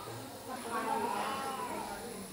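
Faint, wavering cry of a young child, rising and falling in pitch for about a second, over hospital room background noise.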